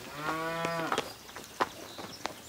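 A cow moos once, a short call of just under a second that rises and then falls a little in pitch, followed by a few faint knocks.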